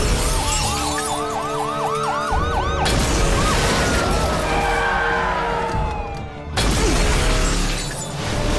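Police car siren yelping, about four quick rising-and-falling sweeps a second, then a long falling wail. It sits in a dramatic TV soundtrack with music and loud bursts of noise that change abruptly about three seconds in and again past six seconds.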